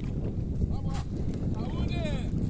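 Wind rumbling steadily on the microphone on an open boat, with faint voices in the background twice.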